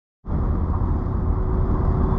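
Inside the cabin of a 1988 Mercedes-Benz 560SL on the road: a steady low rumble of its 5.6-litre V8 and tyre and road noise, starting abruptly about a quarter second in.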